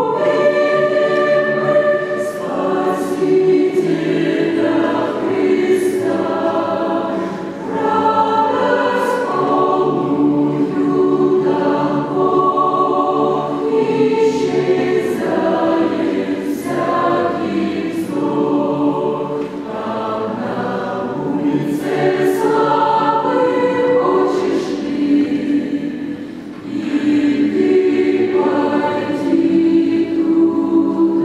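A mixed choir of young men and women singing a song in harmony, with short dips between phrases.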